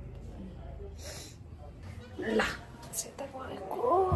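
A person's voice in short bursts without clear words: a brief breath or sniff about a second in, a short exclamation rising and falling in pitch about two seconds in, and voice again at the end.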